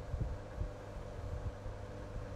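Room noise on a webcam microphone: a steady low electrical hum with irregular soft, low thumps.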